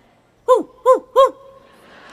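A woman's voice making three quick, high "ouh" hoots, each rising and falling in pitch, as a mocking vocal sound. Audience laughter starts near the end.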